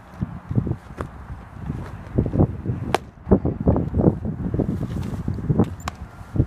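Wind buffeting the microphone with low rustling, broken by sharp smacks of a pitched baseball landing in a catcher's mitt, one midway through and the sharpest just before the end.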